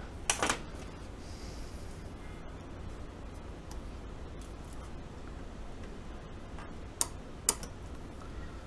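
A few sharp clicks of a small metal tool touching a keyboard's switch pins and circuit board: two just under half a second in, and two more near the end. A steady faint hum lies under them.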